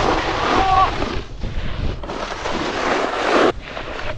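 Snowboard sliding over snow: a hissing scrape in long sweeps that break off about a second and a half in and again near the end, with wind rumbling on the camera microphone.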